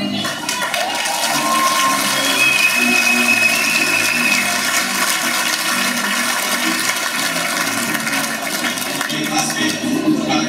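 A loud, steady rushing noise like running water, with faint whistling tones from about two to four seconds in.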